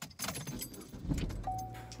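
Keys jangling inside a car: a run of light metallic clicks and rattles, with a low rumble from about a second in.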